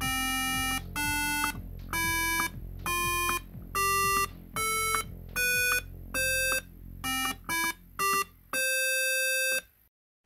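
Electronic square-wave beeps from an Arduino Nano driving a loudspeaker, one note per push button: an ascending eight-note scale from Do (about 261 Hz) up to high Do, each note held roughly half a second. Near the end come three quicker rising notes and a longer final note.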